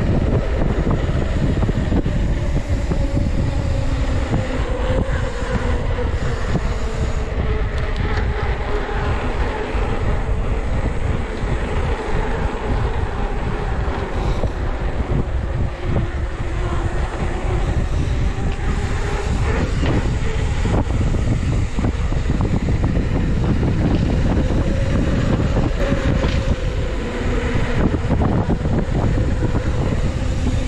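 Wind buffeting the camera's microphone as a mountain bike rolls along a paved road, a loud steady rumble. Under it, a faint hum that rises and falls slowly with the bike's speed, typical of knobby tyres on pavement.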